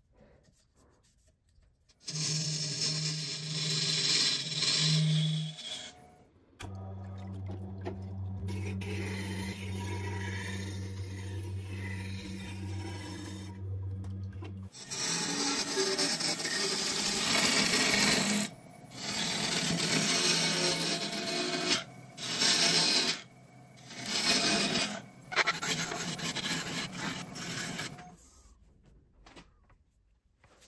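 Turning gouge cutting a spinning epoxy resin blank on a wood lathe: a harsh scraping hiss that comes in bursts with short pauses between cuts. Through the middle stretch, a steady electric motor hum from a sharpening grinder.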